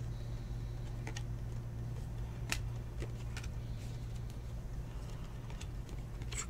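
Trading cards being handled and flipped through by hand, giving a few short sharp clicks and snaps, over a steady low hum.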